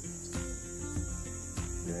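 A steady high insect chorus, with a few faint clicks as tomato vines are handled and pruned.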